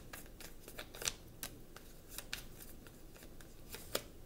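Tarot cards being shuffled and handled: a run of irregular soft snaps and flicks, with a sharper snap about a second in and another near the end.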